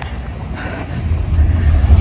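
Wind buffeting a phone's microphone outdoors: a low rumble that grows louder about a second in.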